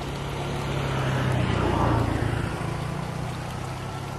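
A motor engine hum that grows louder to a peak about halfway through and then fades, as something passes by, over the sound of a small stream running.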